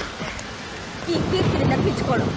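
Heavy rain falling as a steady hiss, with a louder low rumble coming in about a second in.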